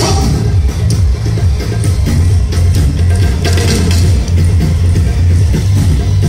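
Yosakoi dance music played loud, with a steady low drum beat running under it.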